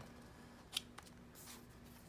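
A small cardboard product box being handled and slid open by hand: one sharp click about three-quarters of a second in, a lighter click just after, then a brief scrape.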